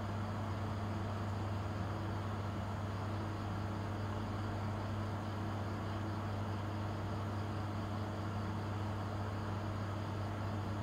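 A steady low hum over a soft hiss.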